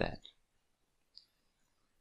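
The last word of speech, then one faint short click about a second in. It is a computer click that launches the web page in the browser.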